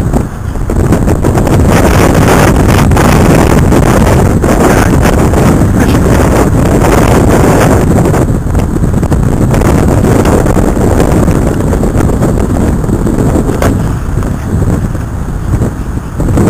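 Strong storm wind buffeting the microphone in a loud, steady low rumble, over the wash of rough, wind-driven waves.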